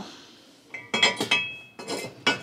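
Ceramic pottery clinking as pieces are handled and moved on a shelf: a quick run of three or four sharp clinks with a brief ring, starting just under a second in.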